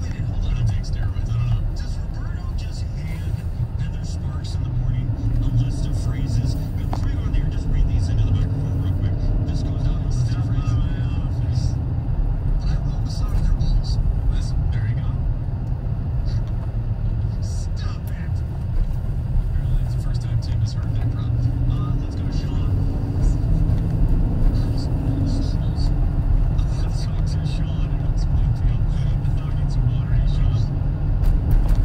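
Car cabin noise while driving: a steady low rumble of engine and tyres on the road.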